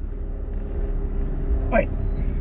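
Car engine idling steadily, heard from inside the cabin: a low rumble with a faint even hum. The car is held in first gear with the clutch pressed in, ready to pull away.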